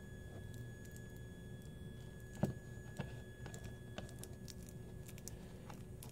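A few sharp clicks and knocks from magnets being handled against a tape-wrapped toroid transformer, the sharpest about two and a half seconds in. Under them runs a faint steady high-pitched tone with a low hum.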